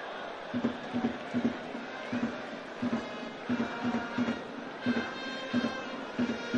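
Baseball cheering section in the stands: drums beating a steady rhythm in pairs, with trumpets coming in about halfway and the crowd joining in the cheer.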